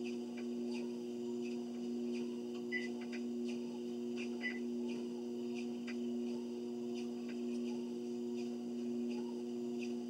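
Treadmill motor running with a steady hum, with light, regular footfalls on the moving belt. Two short beeps from the treadmill console, near three seconds in and again a second and a half later.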